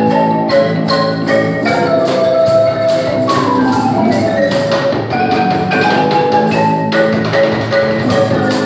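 Marimba band playing live: a marimba played by two players over cajón and electric guitar, in a quick run of struck notes. About three seconds in comes a falling run of notes.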